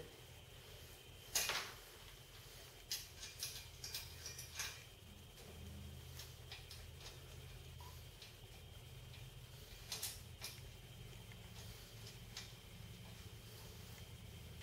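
Faint, scattered clicks and light knocks of small metal parts being handled while bolts are fitted by hand through a bicycle fender brace into the frame, over a low steady room hum.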